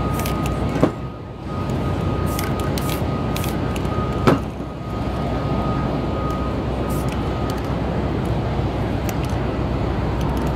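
Steady city street din with several short, high hisses from an aerosol spray-paint can, and two sharp clicks about one and four seconds in.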